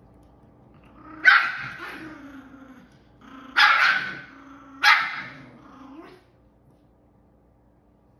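A young Chihuahua barks three times, about a second, three and a half seconds and five seconds in. Each bark trails off into a low growl.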